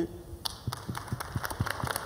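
Audience applauding: many hands clapping, starting about half a second in.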